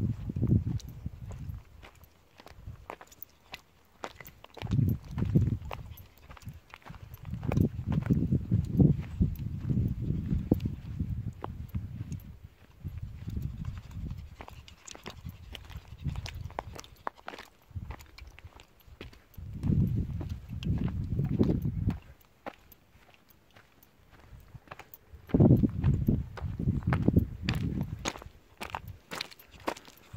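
Footsteps crunching on a loose slate and stone path, with many sharp clicks of stones underfoot. Stretches of low rumbling noise come and go every few seconds and are the loudest part, with a quieter pause about three-quarters of the way through.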